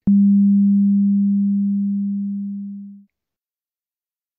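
A single low, pure electronic tone, starting with a click and fading slowly over about three seconds before it stops.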